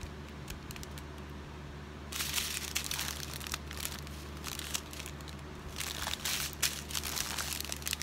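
Clear plastic packets of resin diamond-painting drills crinkling and rustling as they are handled. The handling starts about two seconds in and goes on in irregular bursts of crackle.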